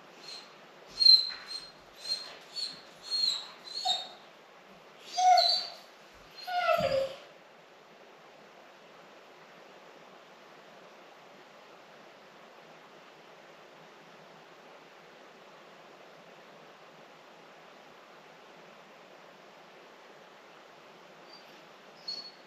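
A dog whining while left alone in the house: about half a dozen short, high-pitched whimpers in the first four seconds, then two longer, lower howling whines.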